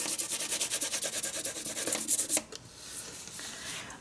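A graphite pencil shading on paper with light pressure: quick, even back-and-forth strokes with the side of the lead, several a second. The strokes stop about two and a half seconds in, leaving only faint rubbing.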